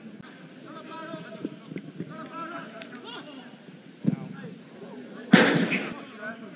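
Pitch-side sound of a football match: faint shouts from players on the pitch, a sharp thud about four seconds in, and a louder rushing burst about half a second long near the end.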